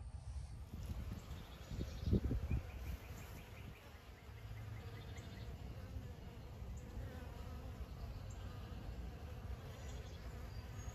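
Honeybees buzzing faintly as they fly around a water source, with a brief low thud about two seconds in.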